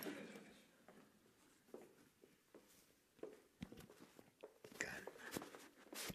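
Near silence with faint, scattered clicks and short rustles of clothing being handled, a little busier near the end.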